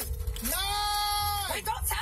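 A man's voice holding one high, drawn-out note for about a second, over a low steady rumble.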